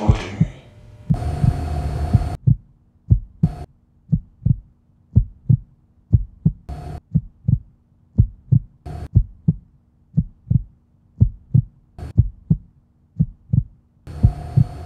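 Trailer sound design: a steady heartbeat-like pulse of low thumps in pairs, about one pair a second. It is broken by crackles of electronic static, one longer burst in the first couple of seconds and then short ones about four times.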